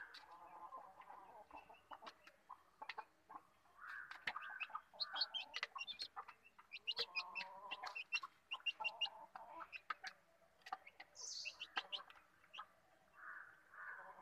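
Young chickens giving soft, repeated clucks while they feed, with many quick sharp taps of beaks pecking grain from a plastic feeder tray.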